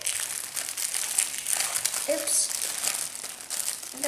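Foil Pop-Tarts wrapper crinkling and crackling as it is handled, a steady run of fine crackles.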